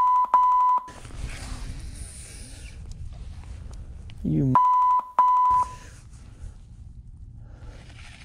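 Two pairs of steady one-tone censor bleeps: the first pair at the very start, and the second about four and a half seconds in, right after a short shout. Wind and rustling noise fill the gaps between.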